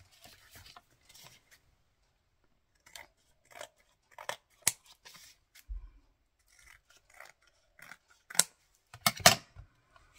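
Scissors cutting through card stock in a series of short, irregular snips.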